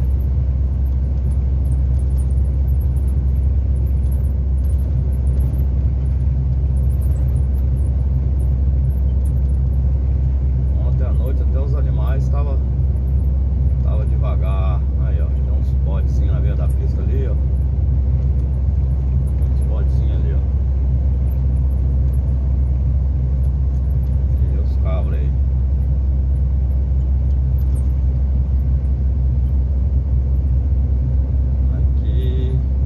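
Steady low drone of a semi-truck's engine and tyre noise heard inside the cab while cruising on the highway. Faint voices come and go in the middle of the stretch.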